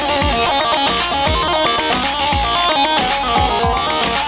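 Loud amplified dance music from a live band: a fast melody of short stepping notes on a plucked string instrument over a steady deep drum beat, with no singing.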